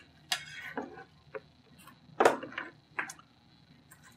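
Loose plastic LEGO bricks clicking and tapping as they are handled on a tabletop: about six sharp, scattered clicks, the loudest a little past halfway.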